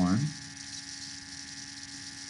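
Steady electrical hum with an even hiss, under the faint scratch of a felt-tip marker writing on paper.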